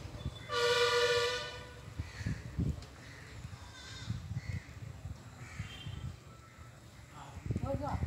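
A horn sounds once about half a second in, a steady tone lasting about a second. Faint voices and outdoor background noise follow.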